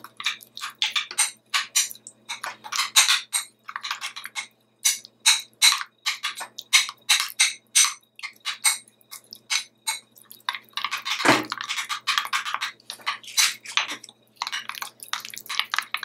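Metal spoon scraping and clinking against a glass bowl while stirring a thick, lumpy paste, in quick, uneven strokes a few times a second.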